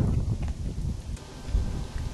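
Wind buffeting the camera microphone: a low, uneven rumble that rises and falls in gusts.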